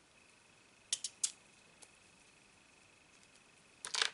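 Light clicks of small plastic and metal RC hub-carrier and axle parts being handled: a few sharp clicks about a second in and a cluster near the end as parts are picked out of a plastic parts tray. A faint steady high-pitched tone lies underneath.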